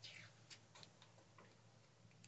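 Near silence: quiet room tone with a few faint, scattered ticks.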